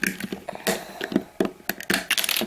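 Plastic Lego bricks clicking and tapping as fingers handle them and press them onto the build, several short sharp clicks over two seconds.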